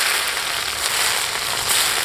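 Hot oil ladled over minced garlic, scallions and chilies on a fish dish, sizzling with a steady hiss.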